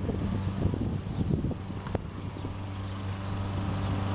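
A steady low hum, like a motor or engine running somewhere nearby, with irregular wind noise on the microphone in the first second and a half.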